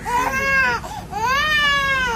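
Baby crying in two long wails, each rising and then falling in pitch, the second longer.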